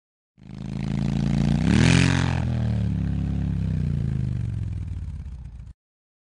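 A motor engine sound rising in pitch to a peak about two seconds in, then falling and holding steady before cutting off abruptly near the end.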